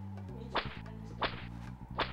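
Wooden staff swung through the air, making two sharp swishes about 0.7 s apart, with a third at the very end, over a low steady music bed.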